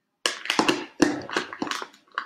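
Sticky vinyl transfer tape being peeled back off a clear plastic box, crackling in a quick run of sharp snaps that starts a moment in.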